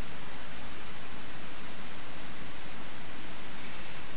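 Steady, even hiss of background noise with no other sound standing out.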